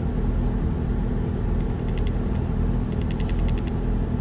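Inside a moving car: steady engine and road rumble as it drives along. A faint, quick ticking comes in briefly twice, in the middle and near the end.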